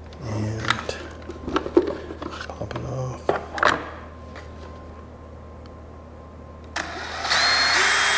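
Plastic clicks and knocks as the instrument cover comes off a motorcycle dash. Then, about seven seconds in, a power drill whirs loudly for about two seconds, spinning the speedometer drive so the needle swings up.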